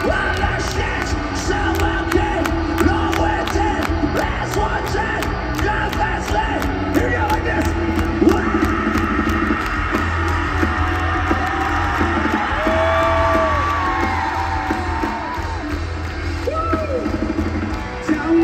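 A live rock band playing at full volume through a big PA, recorded from the audience: steady bass and drums with an even cymbal beat under electric guitars, with a few sliding notes in the second half.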